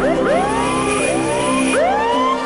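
Logo-sting intro music: a held chord under repeated quick rising swoops that climb and level off.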